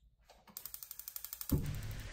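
Gas stove's electric igniter clicking rapidly, about a dozen clicks a second and growing louder, as the burner is lit on high for steaming. A low rush joins the clicks about a second and a half in as the flame catches.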